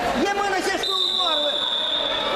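Loud shouting from several voices in a large hall, calls that slide up and down in pitch. About a second in, a steady high-pitched tone starts and holds.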